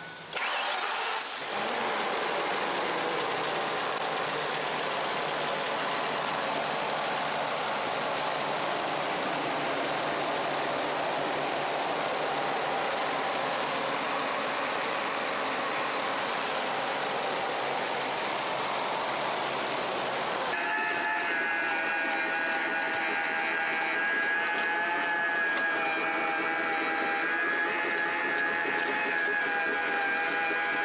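Ford-chassis motorhome engine starting with a burst of noise, then running steadily at idle, heard close up with the hood open. About twenty seconds in the sound cuts abruptly to a different steady sound made of several held tones.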